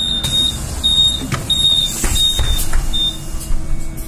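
A Solaris Trollino II 15 AC trolleybus sounds a high-pitched beep about five times in a row in its first three seconds, the warning given as its doors close. Under it is the low rumble of the trolleybus pulling away, with a couple of clicks.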